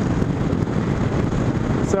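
Steady rush of wind on the microphone mixed with a Honda VTX 1300R's V-twin engine and tyre noise at highway cruising speed.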